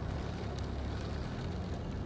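Steady in-cabin noise of a car driving slowly on a wet road: a low rumble of engine and tyres with a faint even hiss over it.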